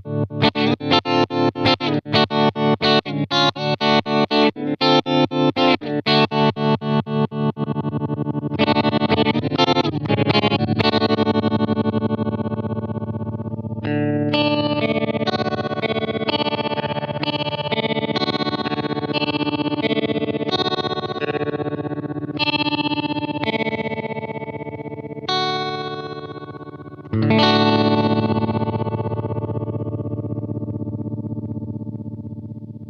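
Electric guitar played through a Dreadbox Treminator analog tremolo pedal. For the first seven seconds or so the chords are chopped into fast, even pulses, about three a second. Then held chords ring with a slower, gentler pulsing, and a new chord is struck near the end.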